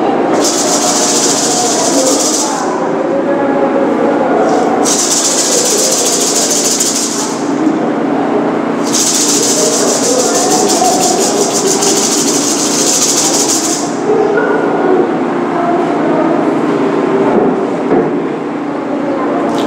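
A shaker rattle shaken in three bursts, the last and longest, over a continuous low hum.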